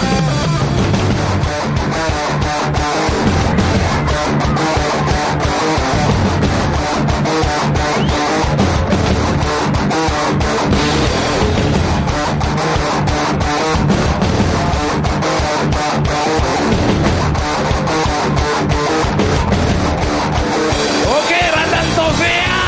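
Live rock band playing an instrumental passage: electric guitar and bass over a drum kit, the drums and cymbals hit in a steady, driving beat.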